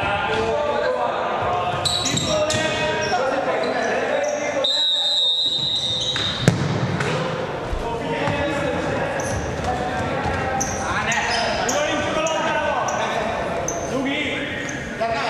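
Futsal game in a reverberant sports hall: players' voices shouting across the court and shoe squeaks on the wooden floor. A single steady whistle blast of just over a second comes about five seconds in, and a sharp knock of the ball being struck follows about a second later.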